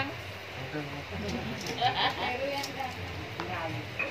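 Fish grilling in a wire basket over charcoal, with a faint sizzle and a few light crackles. Short stretches of people talking come through it, about two seconds in and again near the end.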